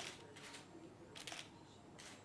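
Camera shutters clicking faintly in two short bursts, one at the start and one just past a second in, over a faint murmur of voices.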